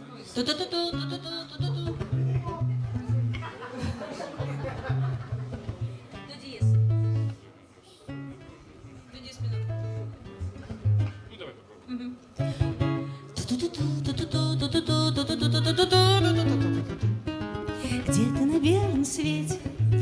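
Acoustic guitar playing a picked melody over a steady run of bass notes, as a solo introduction before the singing comes in.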